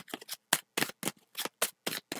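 A tarot deck being shuffled in the hands: a quick, even run of short card snaps, about four to five a second.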